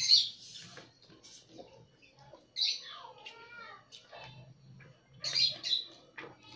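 Instant noodles being slurped and chewed up close: loud wet slurps at the start, again around three seconds in and near the end, with soft chewing and smacking clicks between them.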